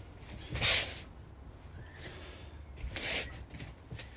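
Two short, forceful exhalations by a person throwing hook punches, one about half a second in and another about three seconds in.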